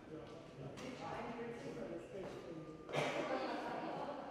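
Indistinct voices of people talking, too unclear to make out words, growing louder about three seconds in.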